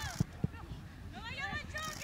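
Two sharp thuds of a football being kicked, about a quarter of a second apart, within the first half second. Voices calling out on and around the pitch follow.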